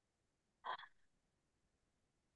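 Near silence on a video call whose audio is dropping out, broken once by a short blip about two-thirds of a second in.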